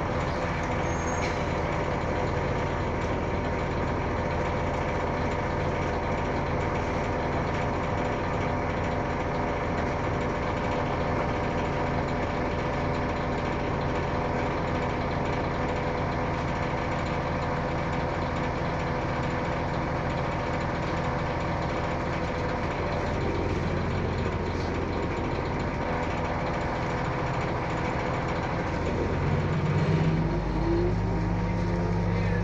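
Inside an Orion VII hybrid-electric city bus creeping in traffic: a steady engine and drivetrain hum with a constant whine over it. Right at the end the pitch rises as the bus picks up speed.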